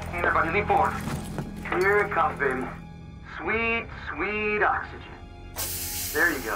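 A person's voice making short strained sounds without words, like grunts and drawn-out groans, four times over a steady music score. A sudden loud hiss starts near the end.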